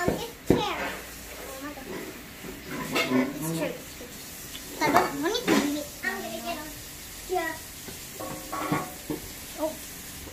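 Wire whisk stirring flour into brownie batter in a stainless steel bowl, with a couple of sharp clinks of the whisk against the bowl, under children's voices.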